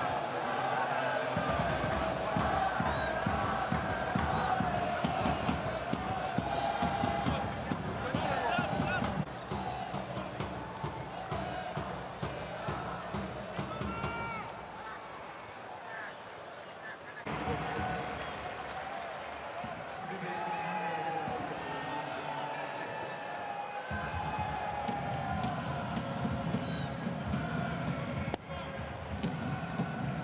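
Stadium crowd noise, cheering and chanting, with voices over it. The sound changes abruptly several times as the pictures cut between shots.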